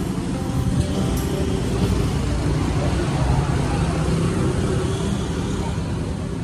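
Steady street traffic noise from cars and motorbikes running and passing along the road, with voices and background music under it.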